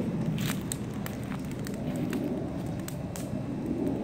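Large open fire burning: a steady low rush of flames with scattered sharp crackles and pops.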